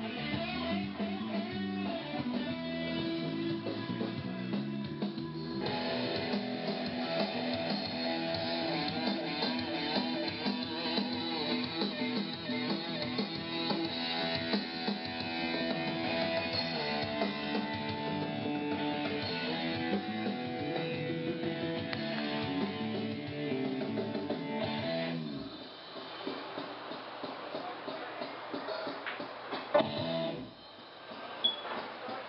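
Live band music led by guitar, with no singing. It fills out about five seconds in and drops to a much quieter passage about 25 seconds in.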